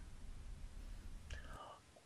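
A quiet pause with faint, steady hiss and low hum, and a short, soft breath-like sound a little over a second in.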